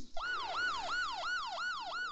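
Ambulance siren sounding a fast repeating yelp, starting suddenly; each cycle jumps up and glides back down, about three times a second.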